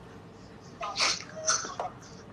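A man laughing too hard to speak: after a quiet moment come three short, breathy, gasping bursts of laughter.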